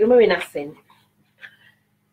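A woman's voice making a short wordless vowel sound whose pitch rises and then falls, lasting under a second at the start.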